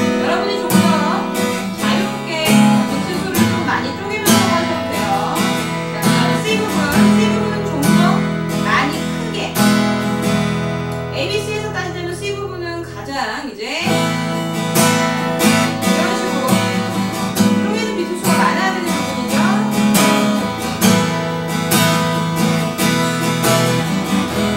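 Steel-string acoustic guitar strummed with a pick, playing steady chords through the song's progression, with a brief break in the strumming about 14 seconds in.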